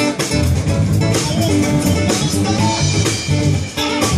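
Live band of electric guitar, electric bass and drum kit playing an instrumental passage without vocals, the guitar carrying moving melodic notes over a steady bass and drum beat.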